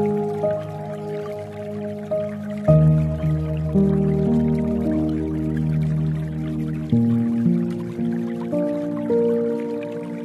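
Slow, soft piano music with held chords that change twice, over a faint dripping and trickling water sound.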